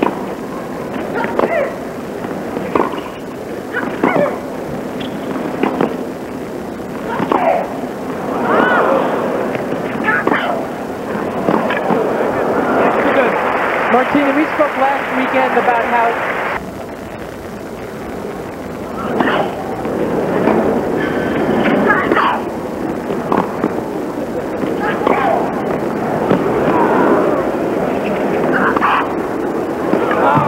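Tennis ball struck by rackets in rallies, a series of sharp pops. The crowd applauds and cheers midway, and the applause cuts off suddenly at about two-thirds of the way through.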